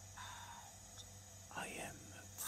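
Soft, breathy whispering from a person in a pause of a slow monologue: a breath about a quarter of a second in, then a short whispered sound near the end. A steady low electrical hum runs underneath.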